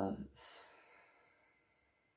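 A drawn-out spoken 'uh' ends, then a soft breath out, a sigh, fades away to near silence.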